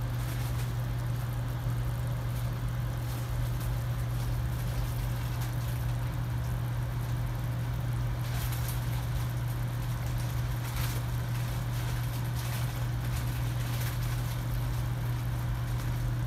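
Pot of soup broth at a rolling boil, bubbling, over a loud, steady low hum.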